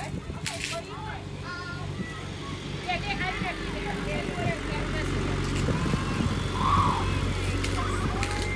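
A steady, low motor hum that grows louder over the second half, under faint background voices, with a short squeak about seven seconds in.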